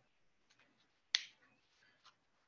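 Near silence broken once, about a second in, by a single short, sharp click.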